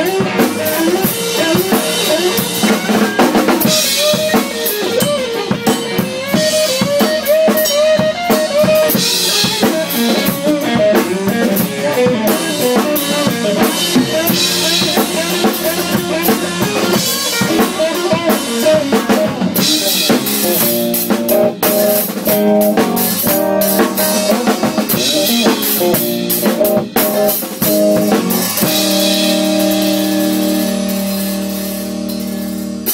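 A drum kit played in a full groove with regular cymbal crashes, heard close up from the kit, over an electric guitar playing along. Near the end the drumming stops and held notes ring on.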